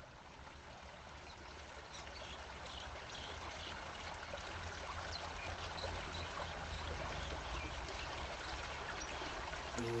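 Recorded rain sounds: a steady hiss of falling rain with scattered drip sounds, fading in gradually. Right at the end a voice begins humming the opening notes of a vocal nasheed.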